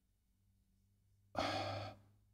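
Near silence, then near the end a man's short breath in, about half a second long, taken close to the microphone before he speaks again.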